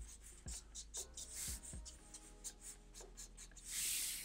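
Felt-tip marker scratching quick short strokes on paper, inking fur lines, with a longer, louder rub of the pen on the paper near the end.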